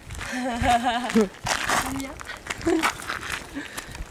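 A woman's voice making drawn-out, wavering playful vocal sounds without clear words, with some rustling between them.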